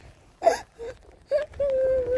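A person's voice: a few short vocal bursts, then from about one and a half seconds in a long, high, slightly wavering wail that is still held at the end.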